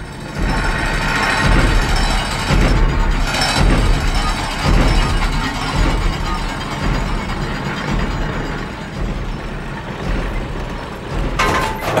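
Cartoon sound effect of a giant armoured tracked war vehicle rolling along, a dense mechanical rumble and clanking with heavy low thuds about once a second, over a music score. A sudden loud burst comes at the very end.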